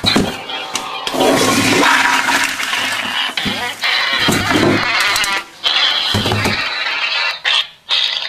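A toilet flushing: a loud rush of water that breaks off briefly twice, about halfway through and near the end.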